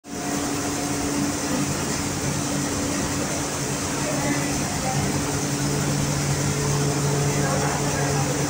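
Grain destoner plant running, with its bucket elevator and blower: a steady mechanical hum and hiss at a constant level.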